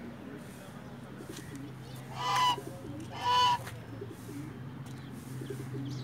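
White domestic goose honking twice, two short honks about a second apart near the middle.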